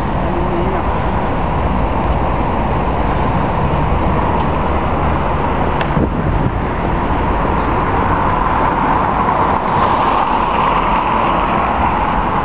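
Steady road traffic noise from cars on a city road, loud and even throughout, with a short click about six seconds in.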